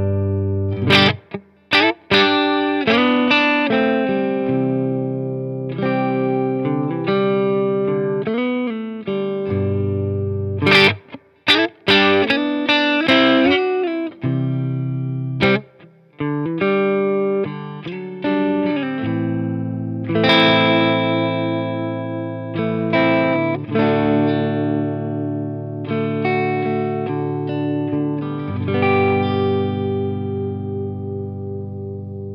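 Electric guitar on its neck humbucker strumming open chords, lightly overdriven by an Origin Effects Revival Drive Compact with its gain turned down, played through a Fender Deluxe Reverb valve amp. Strummed in short phrases at first, then chords held and left to ring in the second half.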